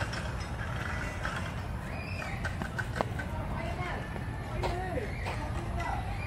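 Outdoor ambience: a steady low rumble, with faint distant voices and a single sharp click about three seconds in.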